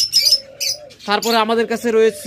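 Caged birds calling: quick high chirps of small cage birds in the first second, then low pitched cooing of doves from about a second in.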